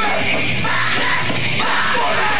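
Hardcore metal band playing live, the vocalist yelling into the microphone over drums and guitar.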